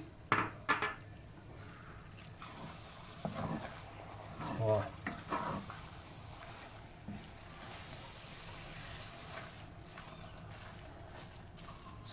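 A wooden spoon stirring shredded meat through fresh cream in a cast-iron pan: quiet, wet scraping and squelching, with a couple of light knocks of the spoon against the pan just after the start.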